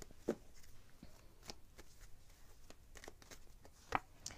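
A deck of cards being shuffled by hand: a quiet run of soft card flicks and taps, with a sharper snap shortly after the start and another just before the end.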